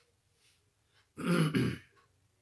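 A man clearing his throat once, a short rasping sound about a second in.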